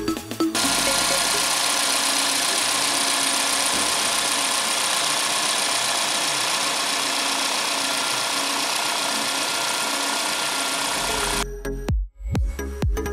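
Volkswagen Polo petrol engine idling steadily with the bonnet open, an even, unchanging running sound that stops suddenly near the end.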